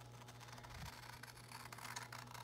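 Quiet room tone with a low steady hum and faint rustling of paper being handled.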